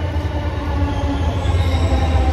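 Bangalore metro train moving through the station platform: a steady low rumble that grows louder, with faint higher tones above it.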